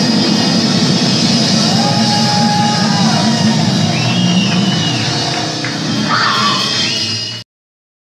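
Live death metal played by a power trio: a dense wall of distorted guitar and bass that cuts off abruptly near the end.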